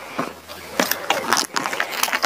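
Plastic baby oil bottle being handled and tipped to pour, with a run of small irregular clicks and rustles.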